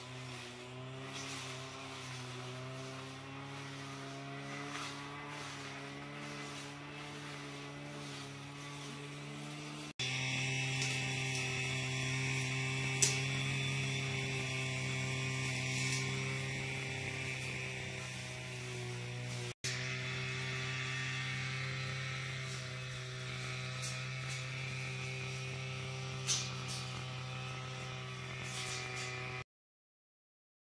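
A steady low hum with a stack of even overtones, like an electrical or small-motor drone. It gets louder after about ten seconds and drops out briefly near twenty, with a few faint clicks, then cuts off suddenly just before the end.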